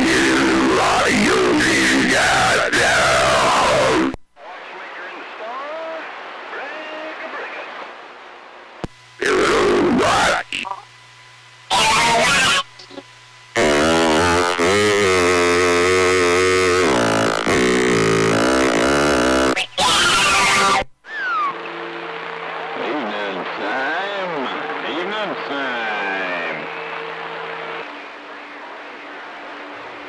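CB radio receiver audio on channel 28: other stations key up in turn, with loud bursts of static and distorted, hard-to-make-out voices that cut in and out abruptly. Between the bursts are quieter stretches of hiss carrying steady tones and wavering, sweeping pitches.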